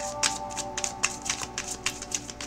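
A deck of tarot cards being shuffled by hand: a quick, irregular run of card snaps and slaps. Soft background music with sustained notes plays underneath.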